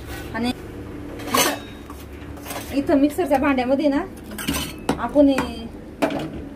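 Stainless-steel kitchen vessels and lids clinking and knocking together as they are handled, several sharp metallic knocks with a short ring after each.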